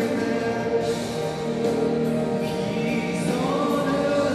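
Singing into a microphone at a Christmas concert: sustained sung notes over musical accompaniment.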